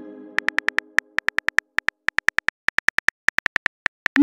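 Phone keyboard typing clicks: about thirty quick taps in short runs as a text message is typed out. Over the first second or so the ringing tail of a message chime fades out.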